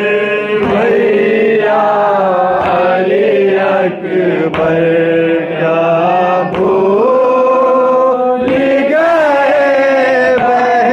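Men's voices chanting a noha, an unaccompanied Shia lament, in long held, wavering sung lines amplified through a microphone.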